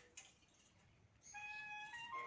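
A faint knock from a wooden handloom just after the start. From a little past halfway comes a high note held at a steady pitch, whose source is unclear: a voice, a pipe or a cat.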